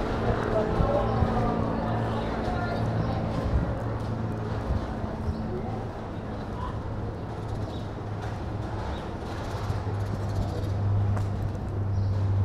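Outdoor street ambience in a pedestrian lane: indistinct voices of people nearby, mostly in the first few seconds, over a steady low hum, with faint footsteps on brick paving.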